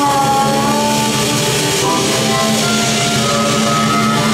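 Live electric blues band playing: a harmonica holds long, slightly wavering notes over electric guitar, bass guitar and drum kit.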